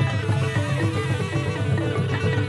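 Traditional Cambodian ensemble music: melodic instruments playing running lines of short notes over a steady drum beat.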